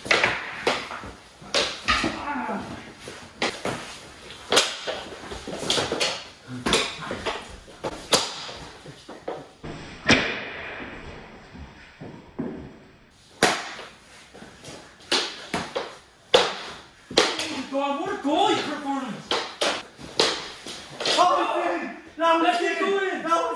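Mini hockey sticks clacking and knocking against the ball and a hard floor in quick, irregular strikes, with bodies bumping and thudding as two players scramble on their knees. Shouts and grunts break in near the end.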